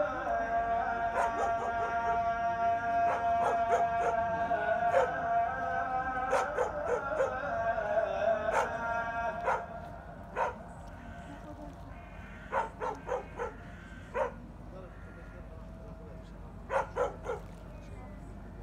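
A dog barking and yipping in short, quick bursts, often three or four in a row. For about the first half a sustained musical tone is held under the barks, then fades out, leaving the barks alone.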